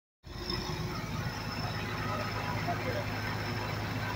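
The diesel engine of a 1993 John Deere 750B crawler dozer, running steadily with an even low hum.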